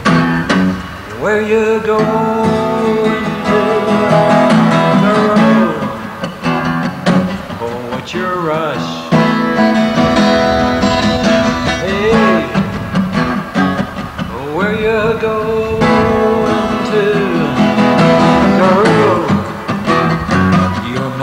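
Folk-rock song in an instrumental passage without lyrics: a strummed acoustic guitar, with a melody line that slides up and down in pitch several times.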